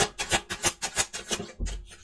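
A deck of tarot cards being shuffled by hand: a quick, even run of papery rasping strokes, about six a second, ending in a low thump near the end.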